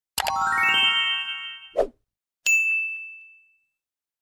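Sound effects for an animated like-and-subscribe button: a click followed by a quick rising run of chime notes, then a short low pop, then another click and a single high bell ding that rings out and fades.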